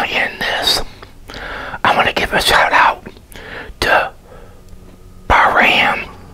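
A man whispering close to the microphone in short bursts with pauses between them.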